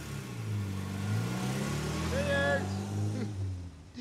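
Taxi van's engine running as the van drives, a steady low engine note that fades out near the end.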